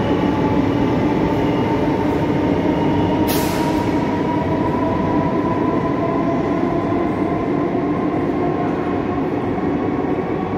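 Chennai suburban electric multiple-unit train running out along the platform and moving away: a steady rumble with a held whining tone, slowly fading. A short burst of hiss about three seconds in.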